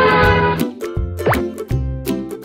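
Upbeat children's-style background music with plucked notes, and a quick rising pop sound effect about a second and a quarter in.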